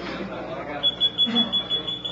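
A steady, high-pitched electronic tone that starts just under a second in and holds without changing pitch, with faint voices murmuring underneath.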